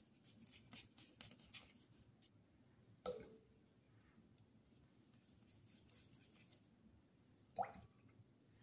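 Near silence with faint light scratching in the first two seconds, then two small knocks: one about three seconds in with a short ring, one near the end. These are painting materials being handled on a tabletop.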